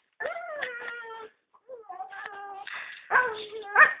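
Greyhound whining in three drawn-out, falling moans, the last one loudest and sliding up in pitch at its end.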